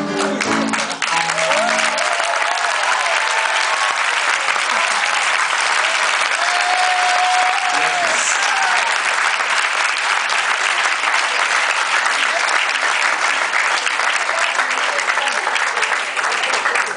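Audience applauding steadily after a song, the last musical notes dying away about two seconds in.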